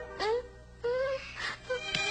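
A girl's voice making two short, sad vocal sounds, each sliding up in pitch, over soft background music.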